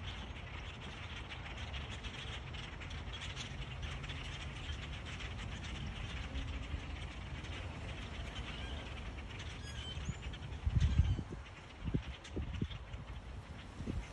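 A large flock of small dark birds calling overhead, a steady mass of overlapping chirps. Underneath runs a low rumble of wind on the microphone, with a few louder bumps about eleven seconds in.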